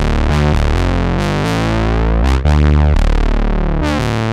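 Arturia MatrixBrute analog mono synth playing a loud, sustained line of changing notes, run through a Neve-style preamp plugin that warms and thickens it. It starts abruptly and the pitch steps up and down several times.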